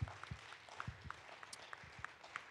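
Faint, scattered applause: a few people clapping irregularly, each clap a short sharp slap.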